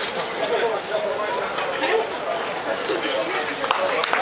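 Several people talking at once in the background, with a few hand claps starting near the end.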